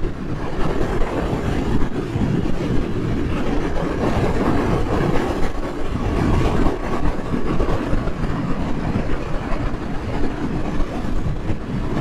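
Wind buffeting the rider and microphone at highway speed on a 2023 Suzuki GSX-8S, a loud, fluttering rush with tyre and road rumble. The bike's 776 cc parallel-twin engine drones faintly and steadily underneath.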